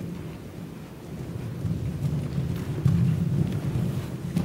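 Muffled hoofbeats of a cantering horse on indoor arena sand: a low rumble that grows louder about a second and a half in as the horse comes nearer.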